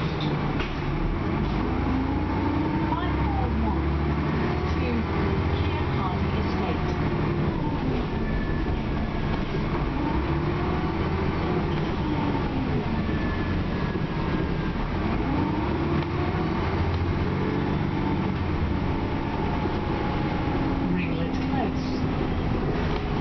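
Inside a 2001 Dennis Trident double-decker bus on the move: the engine and drivetrain note rises and falls in pitch several times as the bus speeds up and slows, over a steady road rumble heard through the cabin.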